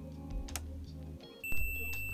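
Multimeter continuity beeper starting a steady, high-pitched beep about one and a half seconds in as the probes touch, signalling that the probes have found a connection between a via and the broken video line. Light clicks of the probe tips come before it.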